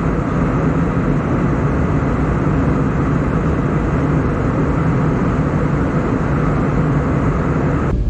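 Steady cabin noise of a jet airliner in flight, the hum of its turbofan engines and the rush of air past the fuselage as heard from inside the cabin.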